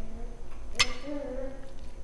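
A single sharp clink of a metal fork against a ceramic dinner plate, a little under a second in, ringing briefly, over faint background voices.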